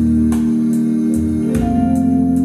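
Instrumental intro of a song: sustained electronic organ chords with a soft, steady tick keeping time. The chord changes about one and a half seconds in.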